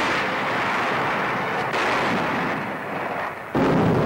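Artillery fire and shell explosions on an old wartime newsreel soundtrack: a dense roar that sets in suddenly, eases a little, and a second blast hits shortly before the end.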